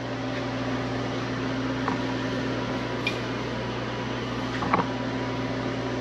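Steady electric motor hum with a fan-like drone, with a couple of faint taps.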